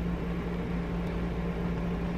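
Steady low electrical hum with a faint even hiss: room tone, with no distinct sounds.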